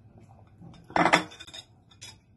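Eating utensils knocking against a noodle bowl: one brief clatter about a second in.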